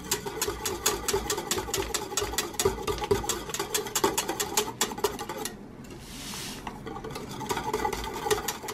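Wire whisk clinking rapidly against the sides of an enamelled steel mug as it stirs gelatin powder into hot almond milk to dissolve it. The clinking stops for about a second past the middle, then resumes.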